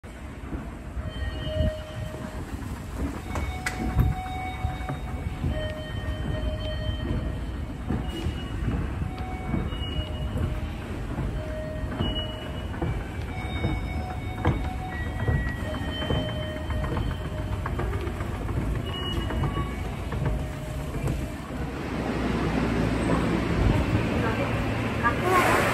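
Subway station escalator running as it is ridden up: a steady low machine rumble with a few sharp clicks, and short high tones coming and going over it. The noise grows louder near the end as the top landing is reached.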